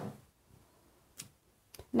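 A few faint, sharp clicks of a metal spatula against a cast iron skillet as it marks lines in cornbread batter.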